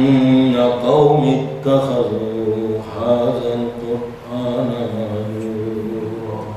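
A man chanting Qur'an recitation (tilawah) in Arabic: long, melodic held phrases that bend in pitch, with short breaths between them.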